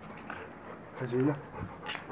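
A Rottweiler panting with its mouth wide open, with a brief low vocal sound about a second in.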